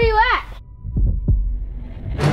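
Heartbeat sound effect: one low double beat about a second in. Before it, a child's voice calls out, high and wavering, for about half a second at the start.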